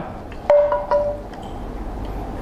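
Tibetan damaru hand drum twirled so its beads strike the heads: a short flurry of strikes about half a second in, followed by a clear ringing tone that fades within a second.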